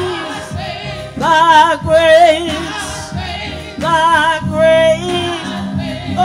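Gospel song: a solo voice sings two long, held phrases with a wide vibrato over a steady instrumental accompaniment.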